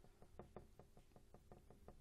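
Faint, quick taps of a paintbrush dabbing on a stretched canvas, about seven a second, laying textured brush marks into acrylic paint.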